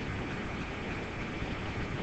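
Steady room noise: an even hiss with a low hum underneath, with no distinct events.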